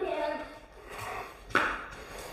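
A faint voice trailing off, then a single scuff of a footstep on bare concrete about one and a half seconds in.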